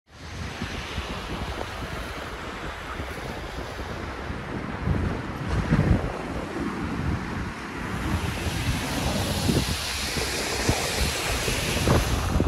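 Wind blowing hard and buffeting the microphone: a steady rushing noise with gusty low rumbles that swell strongest about halfway through.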